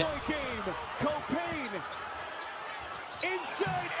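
Broadcast sound of a college basketball game's final seconds: arena crowd noise and shouting voices, with the ball bouncing on the court.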